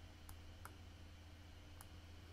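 Three faint computer mouse clicks over near-silent room tone with a low steady hum.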